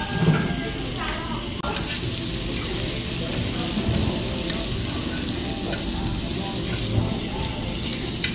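Pork butt and vegetables sizzling steadily on a hot round griddle pan over a gas flame, stirred with metal tongs.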